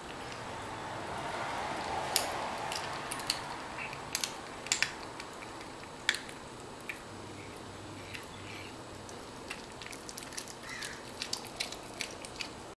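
Domestic cat chewing raw quail, crunching the bones in irregular sharp cracks and clicks, loudest in the first half, with a low growl in places: the cat's happy, possessive growling while it eats.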